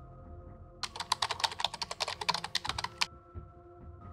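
A rapid run of sharp clicks, about ten a second, lasting about two seconds in the middle, over soft sustained background music.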